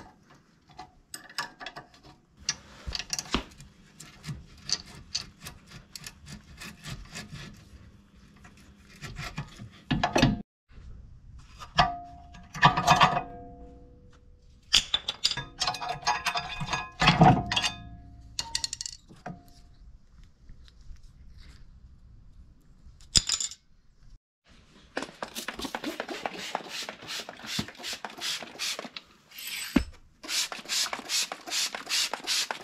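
Hand work on a car's rear disc brake caliper and bracket: scattered metal clicks and knocks, with a few clinks that ring on briefly, as the caliper and pads are handled. About 25 seconds in, a run of fast back-and-forth brush scrubbing strokes on the caliper bracket begins.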